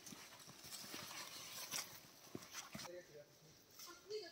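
Footsteps crunching through dry leaf litter and twigs on a forest path: faint, irregular crackles and snaps.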